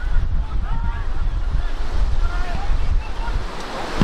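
Wind buffeting the microphone with a loud, gusting low rumble, with faint distant shouts from footballers and spectators on the pitch.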